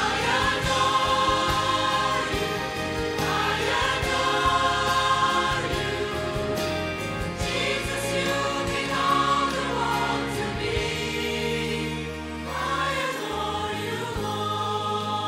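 Mixed church choir, men's and women's voices together, singing a hymn in long held phrases, with a brief break between phrases near the end.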